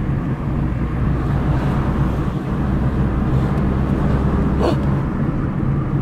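A car's engine and road noise heard from inside the cabin while driving: a steady low hum.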